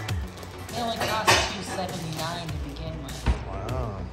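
Voices talking indistinctly under faint music, with two sharp knocks, one just over a second in and another just over three seconds in.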